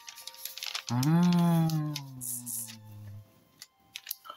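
A woman's long, low 'hmmm' sliding down in pitch for about two seconds, starting about a second in, over soft rustling and tapping of paper as a wrapped paper parcel is handled. Quiet background music with held notes runs underneath.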